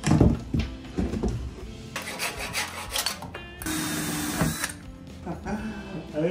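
Woodworking knocks and scraping, with a cordless drill running for about a second near the middle, over background music.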